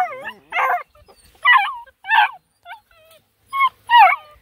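Black and Tan Coonhound puppies yipping and whining: a string of about six short, high-pitched calls that bend in pitch, spaced roughly half a second apart.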